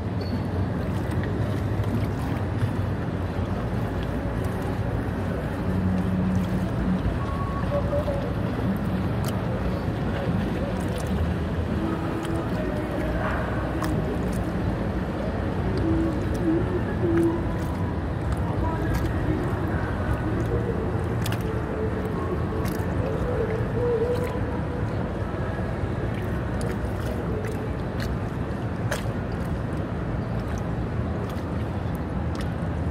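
Steady low rumble of river water and passing motorboat traffic around a kayak, with scattered light clicks.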